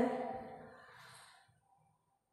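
A woman's spoken word trailing off into a soft breath, which fades away over about a second, then near silence.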